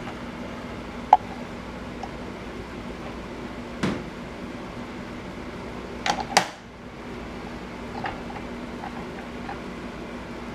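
Steel tool holders knocking and clanking as they are lifted off and set onto a lathe's quick-change tool post. There are a few scattered knocks, the loudest pair about six seconds in, over a steady machine hum.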